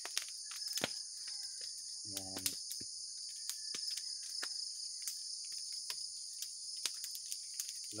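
A steady high-pitched chorus of crickets runs throughout, with scattered sharp crackles from a coconut-shell fire. A short hummed voice comes about two seconds in.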